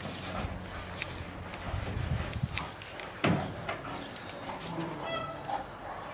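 Two brown bears wrestling in play: low scuffling sounds, a sharp thump about three seconds in, and a brief high squeak near the end.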